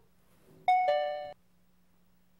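A two-note descending "ding-dong" chime sound effect: a higher ringing note, then a lower one, about half a second in all, cut off abruptly.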